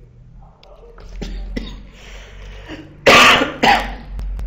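A person coughing twice in quick succession, loud and sudden, about three seconds in.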